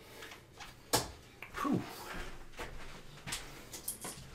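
A 20 g One80 Revenge steel-tip dart striking a Winmau bristle dartboard with one sharp thud about a second in. A few lighter clicks follow near the end as the darts are pulled from the board.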